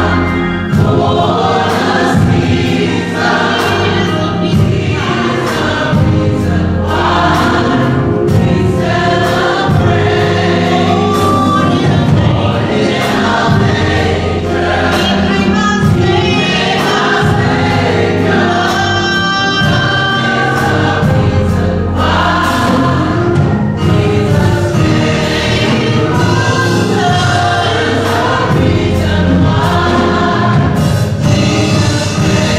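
Mixed-voice gospel choir singing loudly over a steady beat.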